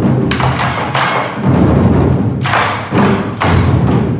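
Chinese drums played loudly in a dense, unbroken run of strokes.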